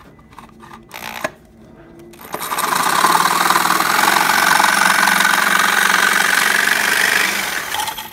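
Small electric jigsaw cutting a coin slot through a thin bamboo lid: it starts about two seconds in, runs steadily for about five seconds and dies away just before the end.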